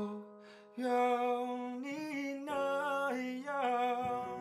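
A man singing a Mandarin pop song to piano accompaniment. The singing dips away briefly just after the start and comes back about a second in.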